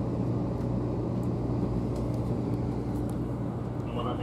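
Cabin noise inside a 500 series Shinkansen under way: a steady low rumble with a constant low hum and a few faint clicks.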